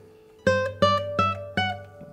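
Nylon-string classical guitar playing four single plucked notes, evenly spaced and stepping upward, climbing a major scale.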